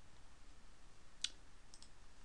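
A computer mouse clicked once, sharply, about a second in, followed by two fainter clicks, over faint room hiss.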